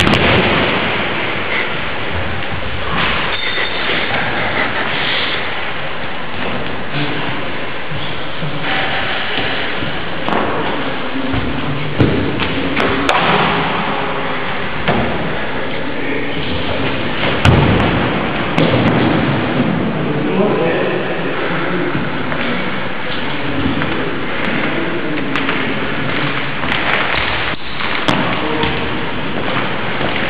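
Bodies slamming and thudding onto padded gym mats during a wrestling bout, over a steady loud bed of music and voices; the sharpest hits come about 12 and 17 seconds in.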